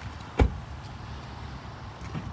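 The rear passenger door of a 2010 Hyundai Tucson shut once, a single heavy thud about half a second in, over a steady low outdoor rumble.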